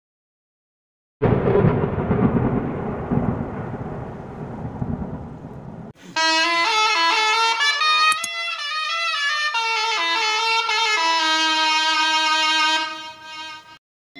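Channel-logo intro sound effect: a sudden noisy rumble about a second in that fades over several seconds, then a musical fanfare of layered held chords with stepping notes from about six seconds, fading out just before the end.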